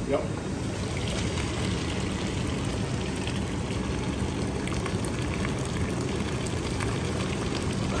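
Hot syrup pouring off the maple-sap evaporator into a filter, over a steady rushing background.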